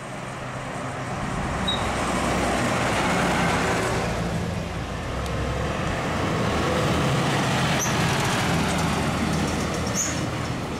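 Two fire engines driving past in turn, a Magirus turntable ladder and then a Volvo fire pump. Their diesel engines and tyres grow louder as each one passes, the first loudest about three seconds in and the second around seven to eight seconds in.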